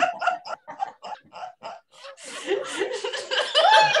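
Laughter-yoga laughing: quick, rhythmic 'ha-ha' pulses for about two seconds, then a louder, breathier laugh whose pitch rises near the end, leading into a 'whee'.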